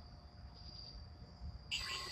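Crickets chirping steadily as a high, even trill, with a sudden, sharp burst of sound about a second and a half in.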